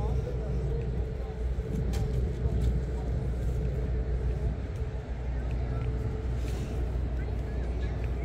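A steady low engine rumble with a constant hum, from a motor running without change.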